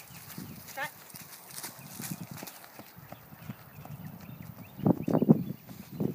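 Horse's hoofbeats on dirt footing as the horse moves off on a lunge line, faint at first and loudest near the end.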